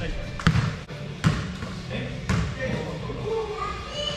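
A basketball bouncing on an indoor gym floor: three sharp bounces about a second apart, echoing in the large hall, with players' voices under them.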